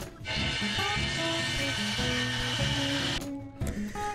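Background music with a simple melody over the steady whirring noise of a Bosch circular saw cutting a pine 2x12 board. The saw noise cuts off abruptly about three seconds in.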